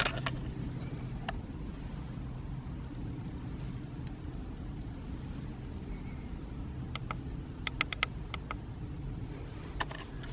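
Sharp little clicks of buttons being pressed on a Spypoint Solar trail camera as its menu is worked to start it: one about a second in, then a quick run of them between about seven and eight and a half seconds. Under them runs a steady low rumble.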